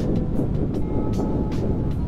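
Steady wind rumble and road noise over the Honda Grom's small single-cylinder engine running at cruising speed, heard through a helmet microphone.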